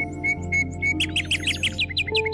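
Soft, slow meditation music with held tones, with birdsong laid over it: a bird repeats short even chirps, then from about a second in gives a quick run of falling chirps.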